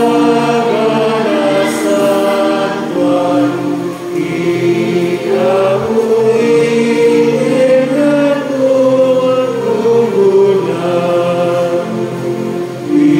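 Voices singing a hymn together in Ilocano, in slow, held notes.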